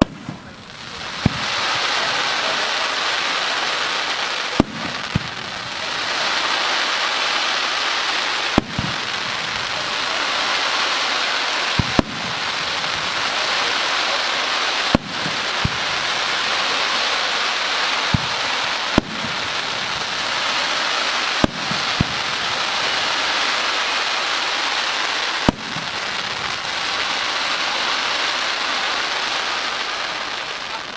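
Fireworks display: aerial shells bursting with sharp bangs every few seconds, about a dozen in all, over a dense continuous hissing crackle of burning sparks.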